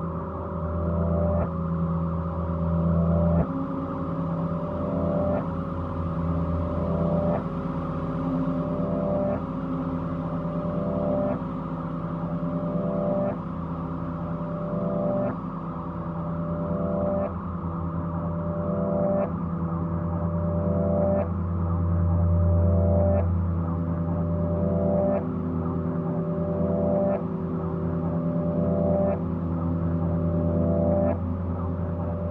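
Drone music: layered, sustained low tones that hold steady, with a figure in the upper tones that shifts about every two seconds and faint regular ticks above it.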